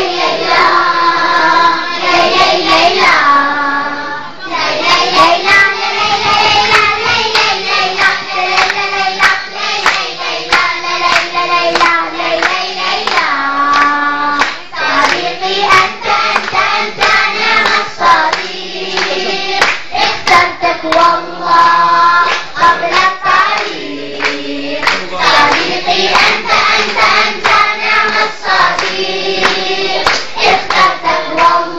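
Girls' children's choir singing a song together, with rhythmic hand clapping in time throughout.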